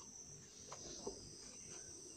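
Quiet room tone: a faint, steady high-pitched hiss with a couple of soft clicks about a second in.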